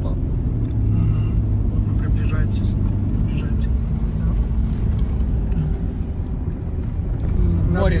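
Steady low drone of a car's engine and tyre noise heard from inside the cabin while driving along a road.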